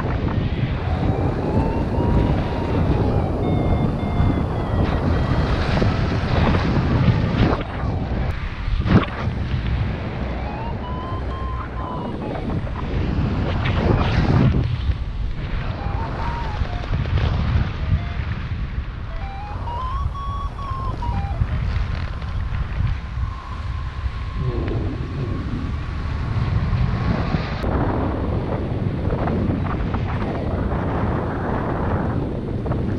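Wind rushing over the microphone in flight, with a paragliding variometer beeping. Its pitch rises and falls in slow arcs as the lift changes, then holds one steady note for several seconds near the end before stopping.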